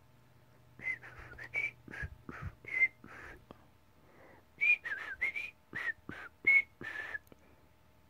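A person whistling a string of short, chirpy notes in two runs, with a pause of about a second in the middle.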